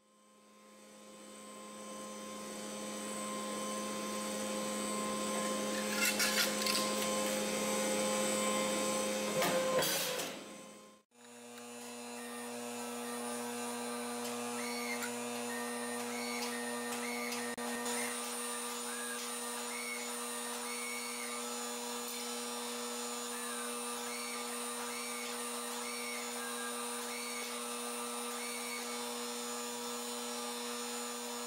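Steady hum of a running workshop machine motor, with a few metallic clatters about six and ten seconds in. The hum cuts off suddenly at about eleven seconds and a slightly higher steady hum takes over, with faint short chirps over it.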